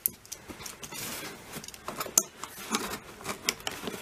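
Gloved hands handling a taped cardboard shipping box: soft rustling with scattered sharp clicks, one standing out a little past two seconds in.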